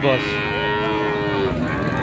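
Cattle mooing: one long, steady call lasting about a second and a half, falling slightly in pitch at the end.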